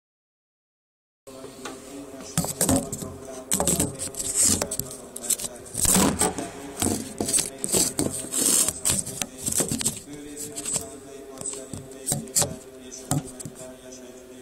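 Camera microphone rubbing and knocking against clothing in irregular rustles and bumps, over a soft, steadily held organ chord.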